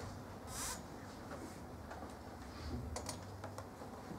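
Quiet room with a steady low hum, a short rustle about half a second in, and a few faint, scattered light clicks.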